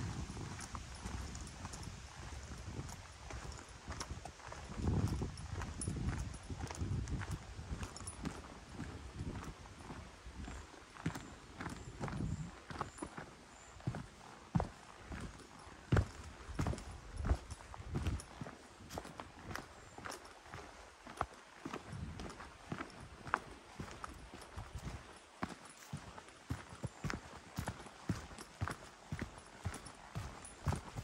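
Footsteps of a walker on a dry dirt footpath, at a steady walking pace of about two steps a second. A low rumble runs under the steps for the first several seconds.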